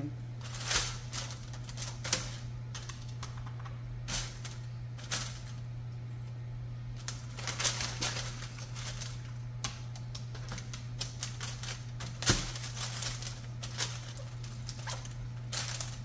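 Parchment paper and aluminium foil crinkling and rustling in irregular bursts as hands handle raw chicken pieces on them, with one sharp click about twelve seconds in. A steady low hum runs underneath.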